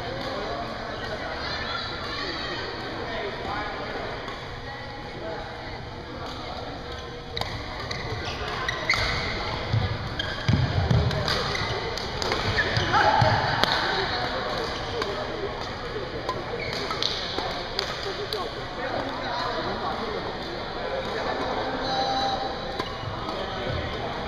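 Badminton doubles rally: racket strikes on the shuttlecock and players' feet pounding the court floor, busiest and loudest in the middle, with heavy thuds of footwork about ten seconds in. Voices carry around the hall throughout.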